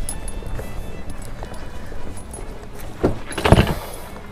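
Pickup truck's rear cab door unlatched and pulled open, two loud clunks about three seconds in, over a steady low rumble with faint music.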